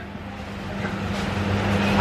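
Steady low hum with a rumbling background noise that grows gradually louder over the two seconds.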